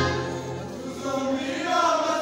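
A large choir singing. A low held chord fades about a second in, and higher voices carry on above it.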